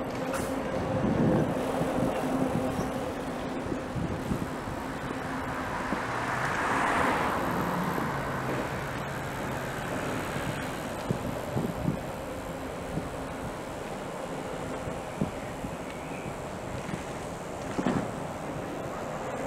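City street traffic and wind noise heard while riding a bicycle, with a vehicle passing that is loudest about seven seconds in. A few short knocks come later.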